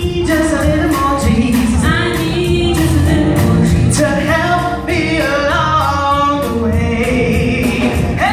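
A woman singing gospel live into a microphone, holding and bending long notes, backed by a band with bass guitar, keyboard and drums playing a steady beat.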